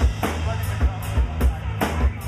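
Live rock band playing an instrumental passage: drum kit with kick and snare hits over bass guitar and electric guitar.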